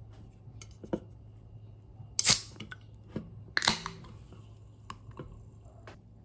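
A carbonated soft-drink can being opened by its pull tab: a sharp crack with a short hiss a little over two seconds in, then a second pop with a longer fizzing hiss at about three and a half seconds as the tab is pushed fully open. Faint clicks of fingers handling the can around them.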